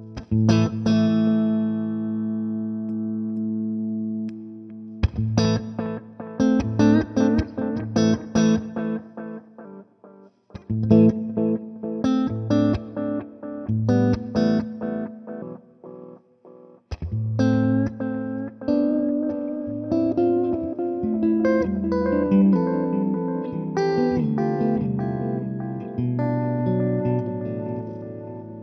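Electric guitar played through a Brunetti Magnetic Memory tube-voiced delay pedal. A held chord rings for the first few seconds, then come phrases of picked single notes, with short breaks about ten and sixteen seconds in.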